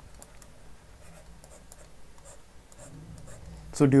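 Stylus writing on a tablet: faint, scattered scratches and light taps as a word is written and underlined, over a faint low hum.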